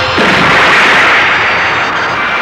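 A loud, noisy explosion-like blast sound effect that hits suddenly and fades away over about a second and a half.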